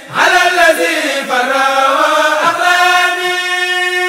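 Voices chanting an Arabic religious poem (a Mouride khassida) in a slow melismatic style. The melody moves between a few notes and then settles on one long held note in the second half.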